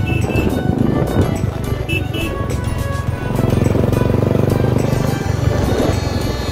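Music playing over a motorcycle engine running on the move, the engine growing louder about three seconds in.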